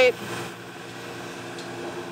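Steady, even hum of vinyl record pressing machinery, with faint steady tones and no distinct strokes.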